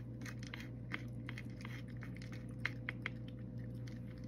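A cat chewing dry kibble: irregular crisp crunches, with a quick run of the loudest ones near the end. A steady low hum runs underneath.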